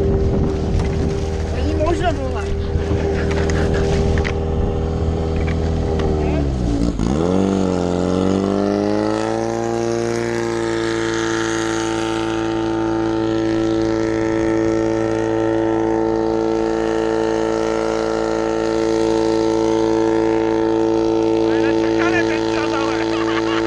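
Portable fire pump's engine running at high revs and pumping water through the hoses. About seven seconds in its pitch dips sharply and climbs back, then it holds a steady high note.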